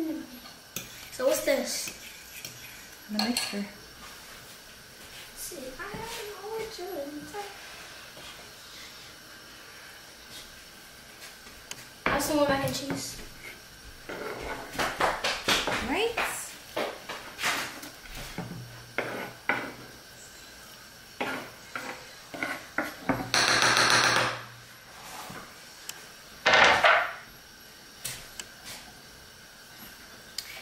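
Kitchen food-prep sounds: a knife scraping soft cooked food off a wooden cutting board, and utensils clinking and knocking against glass bowls and foil pans. There is low speech at times and a short rushing noise late on.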